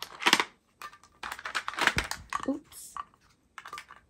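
Clear plastic diamond-drill storage containers being handled and lifted out of a plastic storage tray: an irregular run of plastic clicks and clatters, with loose resin drills rattling inside.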